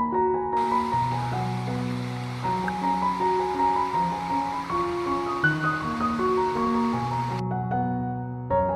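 Slow keyboard music plays throughout. About half a second in, the steady rush of falling water from a small waterfall joins it, then cuts off shortly before the end.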